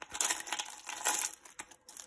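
Small rusted metal charms, paper clips and little bells jingling and clinking against each other as a hand stirs through them in a plastic colander. It is a dense, irregular rattle of many small clicks.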